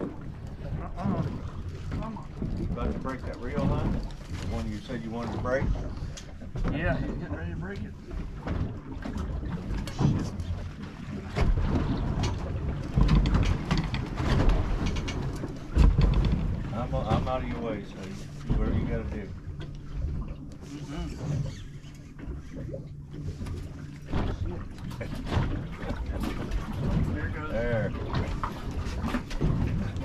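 Indistinct talk among people on a fishing boat at sea, over a steady low hum, with a couple of heavy low thumps around the middle.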